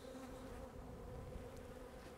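A single honeybee buzzing close by in a faint, steady hum: an annoying, defensive bee hanging around the hive and the beekeeper.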